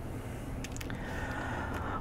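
Low steady background hum and hiss, with a few faint ticks a little over half a second in.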